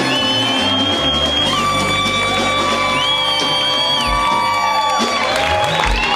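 Live reggae/ska band playing, with horns holding long notes that bend off at their ends over a stepping bass line.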